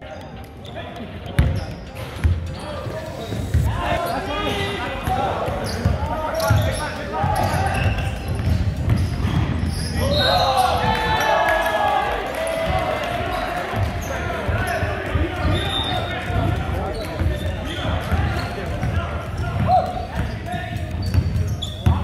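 Basketball bouncing on a hardwood gym floor in repeated thuds, amid the steady chatter of players and spectators in a large hall.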